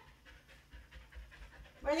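A dog panting quickly and faintly as it moves about close by.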